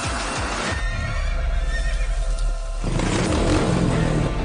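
Dramatic film background score. About a second in, the music thins to a deep, steady rumble with a faint high wavering call over it, and the full score returns near the three-second mark.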